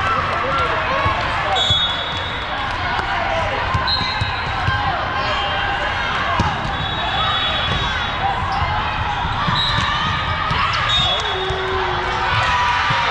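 Busy din of a volleyball tournament hall with many courts: overlapping voices, repeated ball hits and several short, distant referee whistles, all echoing in the large hall.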